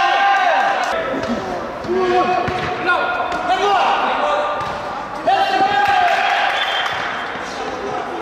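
Footballers shouting to each other in bursts in an indoor hall, with the thuds of the ball being kicked and bouncing on the artificial turf.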